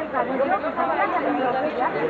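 Several people talking at once: overlapping chatter of a crowd of onlookers, with no words clear enough to follow.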